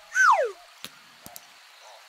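Cartoon sound effects: a short falling whistle-like tone, then a sharp click and a couple of faint ticks as the crocodile's loose baby tooth pops out and drops onto the rock.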